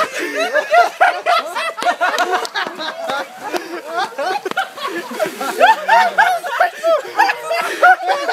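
Several young men laughing and snickering, overlapping and nearly continuous, in short rising-and-falling bursts.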